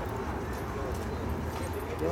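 Faint background voices over a steady low rumble, without a clear rhythm of hoofbeats.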